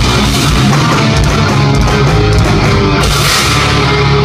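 Thrash metal band playing live and loud: distorted electric guitars, bass and drum kit in an instrumental passage, with no singing.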